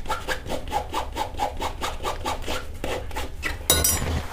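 Rapid back-and-forth scraping of a small hard tool over wet fabric, about seven strokes a second, with one louder stroke near the end. It is the scraping-off of raised, hardened wall-paint stains from black trousers.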